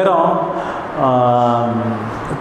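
A man's voice says a short phrase, then about a second in draws out one long held vowel on a steady, slightly falling pitch.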